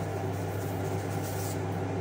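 Steady low hum with an even hiss from a running kitchen appliance, unchanging throughout.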